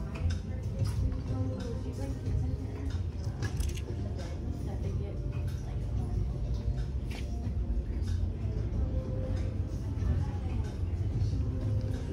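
Shop ambience: faint background music and indistinct voices over a steady low rumble, with occasional light clicks.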